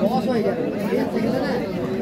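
Several people talking at once: a steady hubbub of market chatter, with no single voice or other sound standing out.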